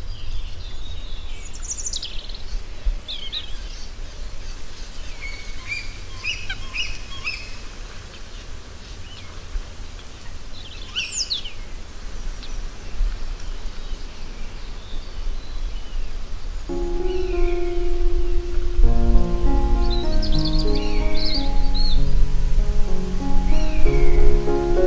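Wild birds chirping and calling in short, scattered phrases over a steady low background rush. About two-thirds of the way through, soft piano music comes in under the birdsong.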